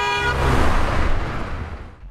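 A car horn gives a steady honk that stops about half a second in, while a car drives past close by, its engine and tyres swelling to a rush and then fading away.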